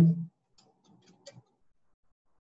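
The end of a spoken word, then several faint, quick computer keyboard keystrokes as a short word is typed, all within about a second.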